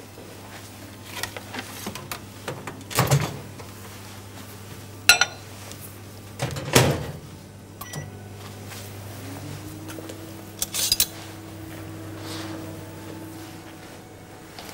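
Microwave oven being used to melt butter: a few knocks and clunks as the door and dish are handled, then the oven's steady hum sets in about nine and a half seconds in.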